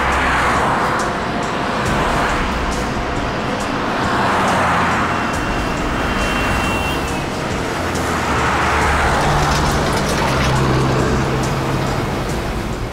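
Highway traffic: vehicles passing by, their noise swelling and fading three times about four seconds apart, over low background music.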